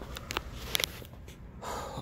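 A quiet pause holding a few faint short clicks in the first second, then a breath drawn in near the end.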